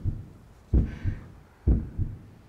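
Heartbeat sound effect: paired low thumps (lub-dub) repeating evenly, about one beat a second.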